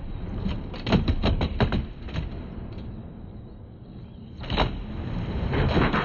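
Eight-wheeled skateboard with doubled trucks rolling on the skatepark floor, a steady low rumble. A run of sharp clacks and knocks comes about a second in, it goes quieter in the middle, and the rolling grows louder again near the end.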